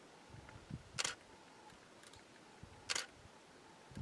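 Two short, sharp clicks about two seconds apart over faint low background noise.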